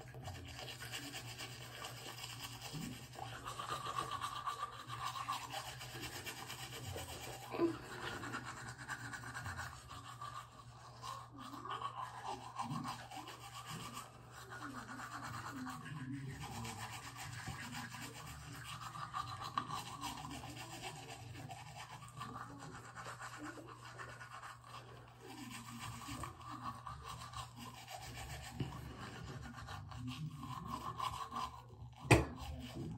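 Manual toothbrush scrubbing teeth in back-and-forth strokes, a wet rasping that goes on without a break.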